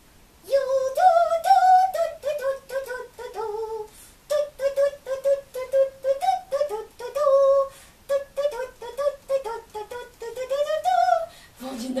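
A high-pitched ventriloquist's puppet voice singing a quick, bouncy tune in short, choppy notes of a few a second, with a brief break a little before the middle.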